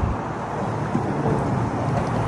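Wind buffeting the phone's microphone over open water, a steady low rumble with no clear rhythm.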